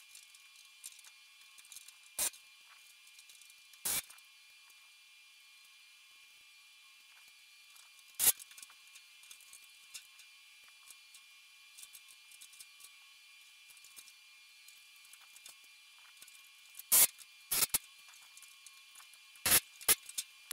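A handful of short, sharp knocks against a quiet room, spaced irregularly: one about two seconds in, a slightly longer one at four seconds, one near eight seconds and three close together near the end, from hand work on an aluminium aircraft wing skin being fitted.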